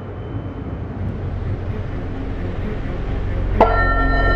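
Intro soundtrack: a low rumble that grows steadily louder, then a sharp hit about three and a half seconds in, as dark music with held tones comes in.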